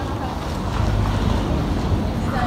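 Wind buffeting the phone's microphone: a steady low rumble.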